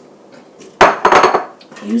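Kitchen dishes and utensils clattering: a sudden burst of knocks and rattles about a second in that dies away after about half a second.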